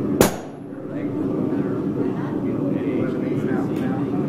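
A single sharp hand-hammer blow on glowing-hot steel at the anvil, with a brief ring, about a quarter second in, over a steady low murmur of the shop.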